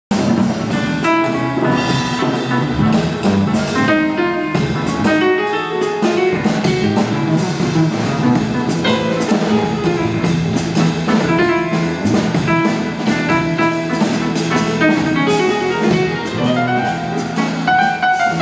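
Jazz keyboard solo played live on a Yamaha stage piano, a steady run of notes with drums keeping time behind it.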